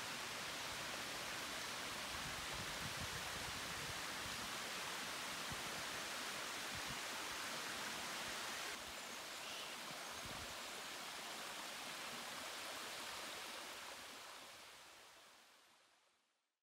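Steady rush of running water, dropping slightly in level about nine seconds in and fading out near the end.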